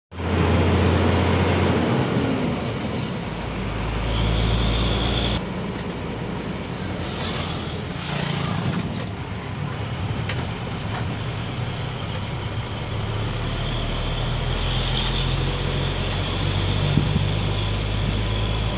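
Truck engine running and tyre/road noise, heard from inside the cab while driving. The engine note shifts a few times.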